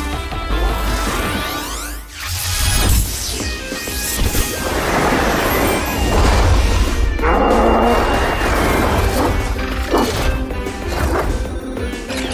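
Cartoon transformation sequence for a bull-bulldozer character: music with rising whooshes in the first couple of seconds, then a long run of loud crashing and banging sound effects from about five seconds in.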